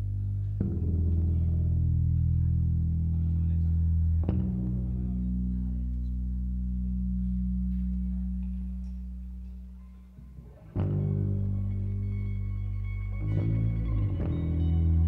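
A slow, sparse passage on electric bass and guitar. Single low bass notes are plucked a few seconds apart and left to ring out, over sustained guitar tones. The sound fades away almost to nothing before a new note comes in, with another soon after.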